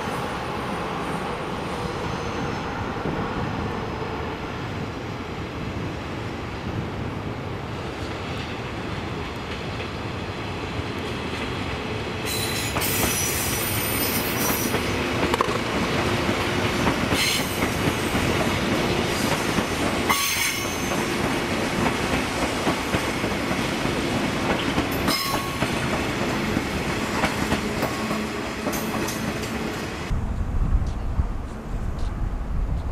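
A 189 series electric train running on rails: a steady rumble that grows louder about twelve seconds in, with repeated short bursts of high wheel squeal and clicking over rail joints.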